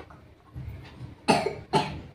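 A person coughing twice in quick succession, the two coughs about half a second apart.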